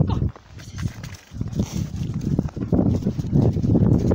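A dog snuffling and rooting with its nose down in the snow, in irregular short bursts of breathy noise and rustling.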